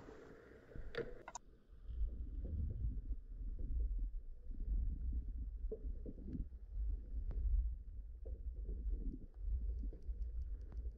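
Muffled low rumble of water rushing past an underwater camera on the anchor rode as it is towed, starting about a second in, with a few faint clicks.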